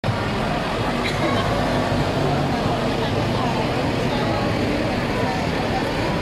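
Farm tractor engines running steadily as a line of tractors drives slowly past, with spectators' voices chattering in the background.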